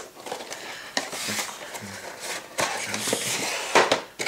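Stiff cardboard model-kit box being opened by hand: the lid slides off with rustling and scraping of card, broken by a few sharp knocks, the loudest near the end as the box is set down on the cutting mat.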